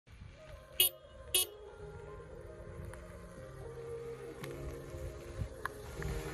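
Two short car horn toots about half a second apart, over quiet background music.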